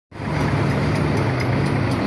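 A heavy engine running steadily at idle, a low even hum.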